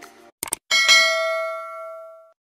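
Two quick mouse clicks, then a bright notification-bell ding that rings and fades away over about a second and a half: the sound effect of clicking a subscribe button's bell.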